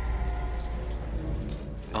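Metal handcuffs clinking and jangling in short rattles over a low, steady drone.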